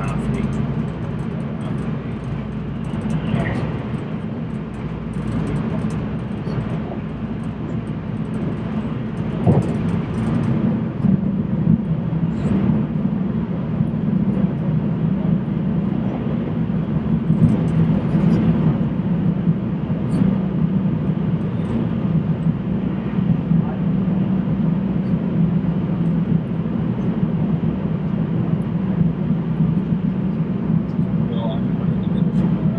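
Steady low rumble of a passenger train running, heard from inside the car, with a few brief clicks and knocks; it grows slightly louder about ten seconds in.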